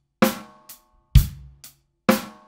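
Drum kit played with sticks at a slow, even tempo of about 60 beats per minute: a strong hit roughly once a second, each ringing out, with a quieter stroke halfway between.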